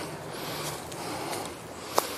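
A man walking up a steep slope covered in dry cut grass and leaves: a steady, soft rustling hiss of steps and breathing.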